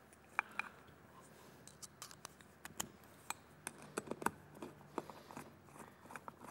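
Faint, irregular clicks and ticks of screws being fitted back into the plastic housing of a linear air pump.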